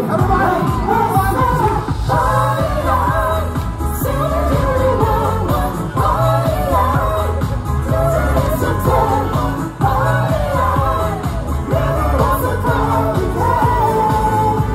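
Live amplified pop music: a vocal group singing a melody over a steady bass beat, played through stage speakers.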